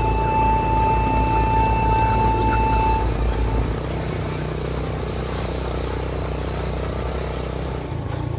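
A motorbike engine running steadily as it rides along a dirt track, with music over it. The engine sound drops a little in level a little under four seconds in.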